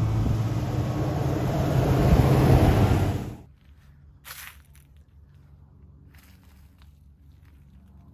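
1969 Dodge W100 4x4 pickup driving past on the road, its engine and tyres getting louder as it comes close. The sound cuts off suddenly a little over three seconds in, leaving much quieter outdoor sound with a few faint rustles and knocks.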